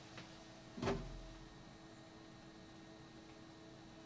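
Brief soft handling noise about a second in as hands pick up the small normalizer box and a plastic trimmer-adjustment tool, over a faint steady hum.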